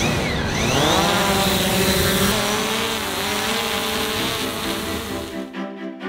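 DJI Mavic Pro quadcopter's motors and propellers spinning up with a rising whine as it lifts off, then holding a steady buzz. It cuts off suddenly about five and a half seconds in, and music takes over.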